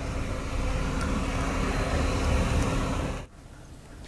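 Steady outdoor ambient rumble with a hiss over it, cutting off abruptly a little over three seconds in.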